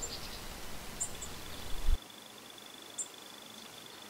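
Faint outdoor ambience with a few short, very high bird chirps and a steady, evenly pulsing high-pitched buzz. A low rumble stops abruptly about halfway through.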